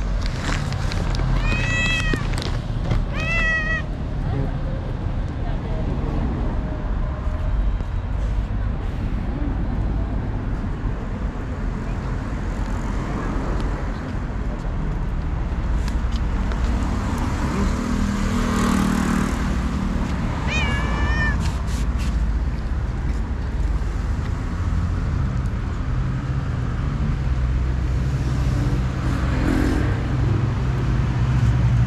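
Stray cats meowing: three short calls that rise and fall in pitch, two in the first few seconds and one about two-thirds of the way through, over a steady low rumble of street traffic.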